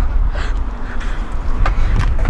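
Uneven low rumble of wind on the microphone, with a couple of brief knocks from handling at the open car boot.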